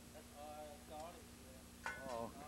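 Quiet stretch with a steady low hum and faint, soft speech.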